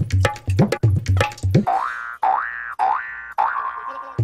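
Comedy background music: a tabla-style drum beat that stops about one and a half seconds in, then about four rising, springy 'boing' slides follow one after another as a comic sound effect.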